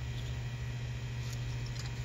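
Steady low hum of room tone, with a couple of faint ticks near the end.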